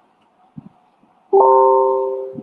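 An electronic notification chime about a second and a half in: a few clear steady notes sounding together, sharp start, fading away over about a second. A few faint soft knocks come before it.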